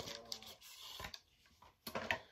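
Faint handling noise from a cardboard eyeshadow palette box, with a few light taps and clicks, the clearest near the end.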